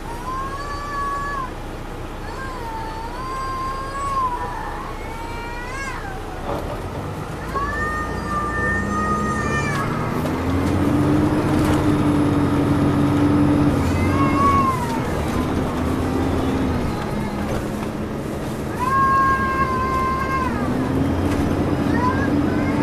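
Inside a 2002 MCI D4000 coach: the Detroit Diesel Series 60 engine pulls away from a stop and its note climbs from about seven seconds in, dipping twice as the Allison automatic transmission shifts up. Over it come repeated short, high-pitched squeals from the bus, several in the first few seconds and twice more later.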